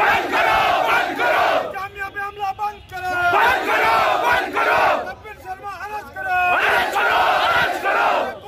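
Protest crowd chanting slogans in call and response: a single voice calls a line and the crowd shouts back, three times over.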